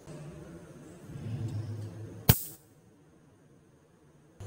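A single sharp snap about two seconds in, a charged capacitor's two terminals being shorted together and sparking as its stored charge discharges, over a low electrical hum; the sound then cuts off suddenly.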